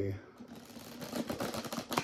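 A deck of oracle cards being shuffled by hand: a quick, dense run of clicks.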